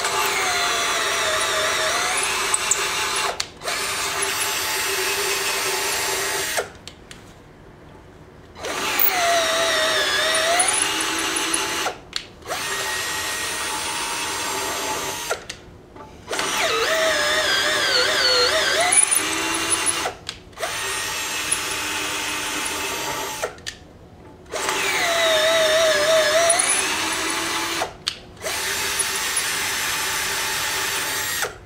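Cordless drill boring holes into a metal plate with a twist bit, in four long runs with pauses of about two seconds between them. At the start of each run the motor's pitch sags as the bit bites, then climbs back, and each run breaks off briefly once.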